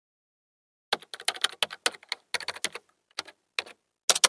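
Computer keyboard typing: a fast, uneven run of key clicks starting about a second in, with brief pauses, used as the sound effect for text being typed into a search bar.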